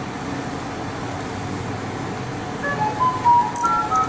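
A short electronic melody of pure beeping notes, stepping up and down in pitch, starts about two and a half seconds in over a steady background hum.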